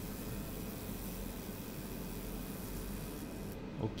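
50 W JPT MOPA fiber laser marking a polished steel dog tag on a light cleaning pass: a steady hiss that stops just before the end as the pass finishes.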